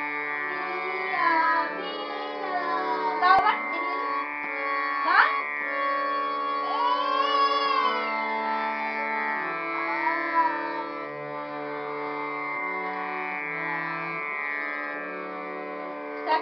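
Harmonium playing sustained notes over a lower line that steps from note to note, with a voice singing a melody that glides and bends between pitches.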